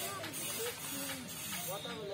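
Voices and background music over a steady hiss.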